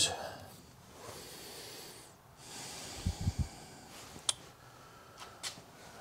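Dry-erase marker drawn across a whiteboard in one stroke of about two seconds, crossing off an item. A few soft low thumps follow about three seconds in, then a few light clicks.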